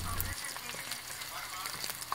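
Whole rainbow trout frying in hot olive oil in a frying pan: a steady sizzle with many small crackling pops.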